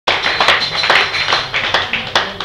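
A small bar audience applauding, many hands clapping irregularly, the claps thinning out near the end.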